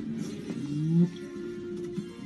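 Television film soundtrack playing music, with a low sliding tone that rises and swells to its loudest about a second in, then holds steady.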